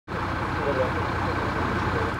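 Solaris city bus engine idling steadily with a low hum, while people talk faintly in the background.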